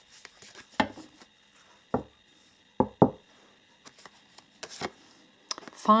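Oracle cards being handled and drawn from a deck: a handful of separate sharp taps and card snaps, two of them close together about three seconds in.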